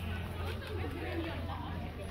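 Indistinct background chatter of people's voices, over a steady low hum.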